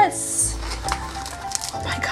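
Plastic-wrapped candy canes crinkling as they are handled, loudest in the first half second, over faint music.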